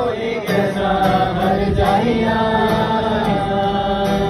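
Several voices singing a Hindi song together to strummed acoustic guitars, with long held notes that bend up and down.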